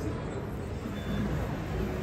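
A steady low rumble of background noise in a large indoor space, with no sharp sounds and a few faint notes.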